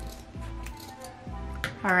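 Scissors snipping through a bundle of jute twine, a couple of short sharp cuts, over background music with held notes and a soft bass.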